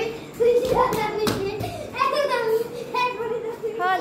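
Children's excited high-pitched shouting and laughter, with a woman laughing along. A single sharp impact sound cuts through about a second in.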